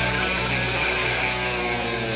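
Rock music: sustained electric guitar chords from the backing track, with an acoustic drum kit played along and its cymbals ringing.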